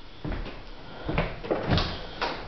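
A few dull knocks and thuds, the loudest and sharpest near the end: a door being opened or shut.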